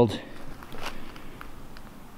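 Footsteps walking over a forest floor of dry needles, leaves and twigs, with a few soft crunches and small clicks.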